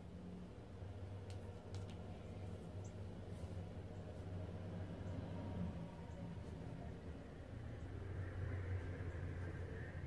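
Quiet room tone: a low steady hum with a few faint light ticks.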